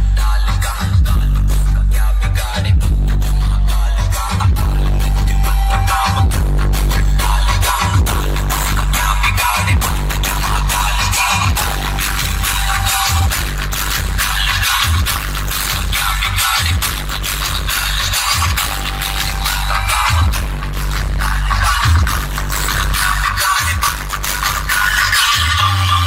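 Dance music played very loud through a DJ sound system's wall of bass speakers, with heavy deep bass and a steady beat.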